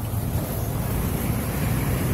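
Wind buffeting the phone's microphone: a steady, heavy rumble with a hiss above it.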